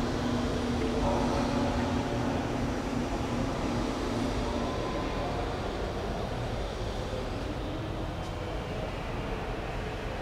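Steady low rumble of background noise inside a large church, with a hum that drops away about four and a half seconds in.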